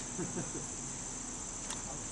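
Steady high-pitched chirring of crickets or similar insects, with faint distant voices briefly in the background.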